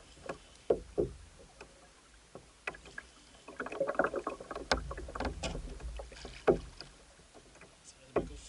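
Sharp knocks and clicks of a fishing rod and baitcasting reel being handled on a kayak, with a denser rattling stretch of reel work in the middle as the rod loads up.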